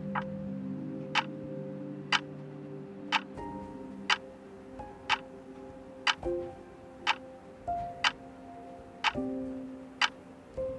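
Clock ticking once a second, each tick a sharp click, over slow music of held notes.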